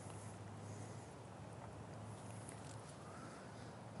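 Faint, steady outdoor background noise with a low hum and no distinct events.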